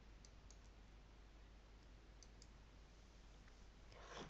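Near silence with a low steady hum, broken by a few faint computer mouse clicks in two quick pairs, one pair near the start and one about two seconds in.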